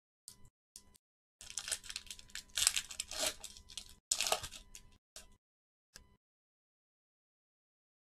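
A trading-card pack wrapper is torn open and crinkled by hand. There are two brief rustles, then about four seconds of crackly tearing and crinkling with a short break near the middle, and a final small rustle.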